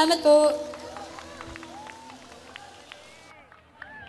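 A live rock band's final hit on the last chord, a cymbal crash over ringing guitars, then an audience cheering and shouting as the sound dies away.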